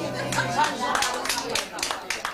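A small group of people clapping as the held notes of a song die away. Scattered claps begin about half a second in and grow quicker and denser, with voices talking over them.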